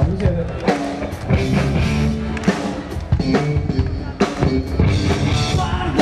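A live rock band playing, led by a drum kit with kick drum and cymbal hits over sustained guitar and keyboard-like notes.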